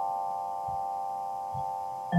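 Background music: a chord of several ringing mallet-instrument notes, vibraphone-like, held and slowly fading away.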